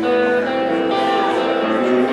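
Solo electric guitar playing chords and single notes that ring on, with the chord changing every half-second or so.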